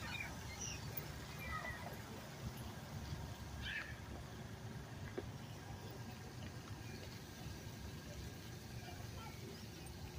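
Quiet outdoor background: a steady low rumble, with a few faint short bird chirps in the first few seconds.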